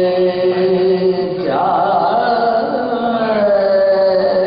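Unaccompanied male voices chanting an Urdu marsiya in soz-khwani style: steady held notes, joined about a second and a half in by a wavering voice that slides down in pitch.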